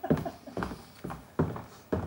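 A few short, irregularly spaced thumps, with the loudest near the start.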